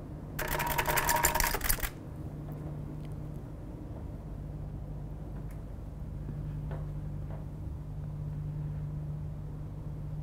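Canon DSLR shutter firing in high-speed continuous mode: a fast, even train of clicks lasting about a second and a half, then stopping. A steady low hum carries on after it.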